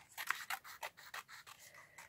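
Small scissors snipping through a sheet of inked paper, a run of quick cuts several times a second.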